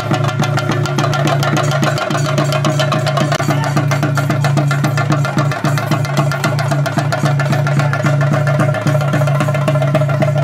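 Chenda drums beaten in a fast, dense, unbroken roll, with a steady low tone held beneath the strokes.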